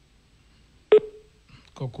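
A single sharp click with a brief low beep that dies away quickly, about a second in, during a pause in speech.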